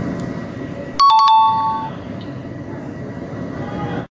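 A two-note ding-dong chime, a higher note then a lower one, about a second in, each ringing briefly over a steady background hiss.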